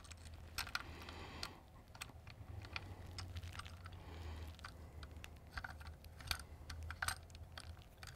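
Faint, irregular small clicks and taps of a metal Allen key and screws as a finder scope base is fastened to a telescope tube.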